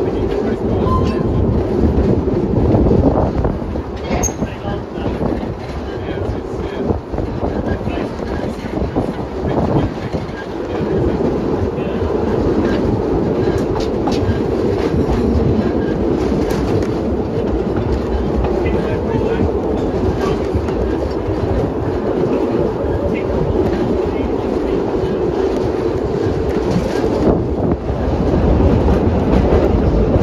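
Narrow-gauge light railway train running steadily, heard from aboard a carriage: a continuous rumble of the running gear with the wheels clicking over the rail joints.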